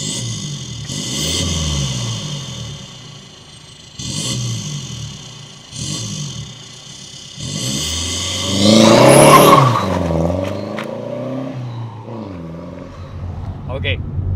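Hyundai Verna 1.6 CRDi four-cylinder turbodiesel revved repeatedly while stationary, heard at the tailpipe through its performance downpipe and race muffler. The car runs a Stage 2 remap. It gives about five rises and falls in revs, and the longest and loudest comes about two-thirds of the way in.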